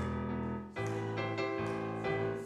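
Piano or keyboard playing the accompaniment to an upbeat hymn, moving through changing chords.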